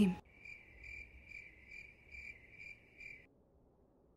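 Cricket chirping sound effect: about seven even, high chirps, roughly two a second, which stop a little past three seconds in. It is the stock 'crickets' gag that marks an awkward silence.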